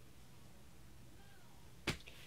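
Quiet room tone, then a single sharp click near the end.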